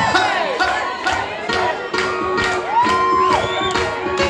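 Live band playing the opening of a song: guitar over a steady beat, with whoops and cheering from the crowd and one long shouted whoop near the end.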